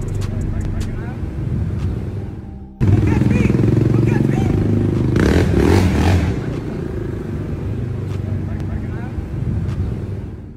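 Indistinct voices over a steady low drone of street noise. It fades out and cuts back in abruptly about three seconds in.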